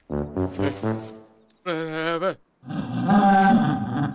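Deep, brass-like bleats of a giant cartoon lamb: a quick run of falling calls, a short call that drops in pitch at the end, then a loud, wavering wail that is the loudest part.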